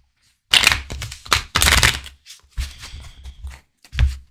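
A deck of tarot cards being shuffled by hand, in a few short rustling bursts, the loudest about one and a half to two seconds in, then softer ones.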